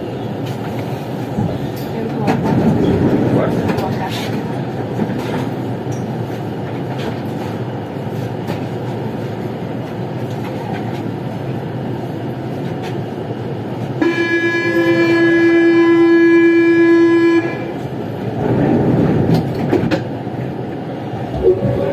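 Siemens VAL 208 NG metro train standing in a tunnel, its onboard equipment giving a steady running noise that swells a couple of times. About fourteen seconds in, a steady tone sounds for about three and a half seconds.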